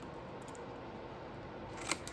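Small scissors snipping brown cardstock, with one clear snip near the end.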